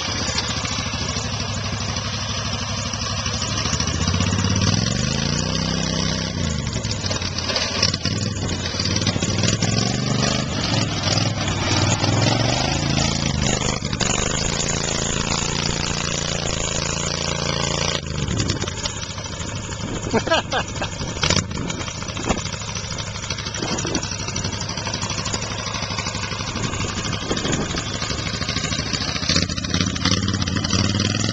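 Lifted golf cart's small petrol engine running as the cart drives over rough ground. Its pitch rises and falls with the throttle about five seconds in, and a few sharp knocks come about two-thirds of the way through.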